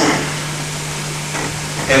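A pause in the talk filled by a steady low hum with background hiss from the old recording. Speech starts again right at the end.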